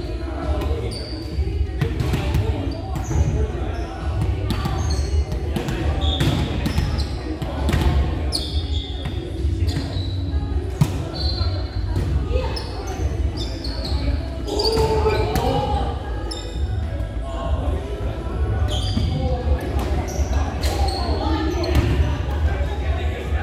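Indoor volleyball being played on a hardwood gym floor: repeated sharp smacks of the ball being hit, short high squeaks of shoes on the court, and players calling out, all echoing in a large gym over a steady low hum.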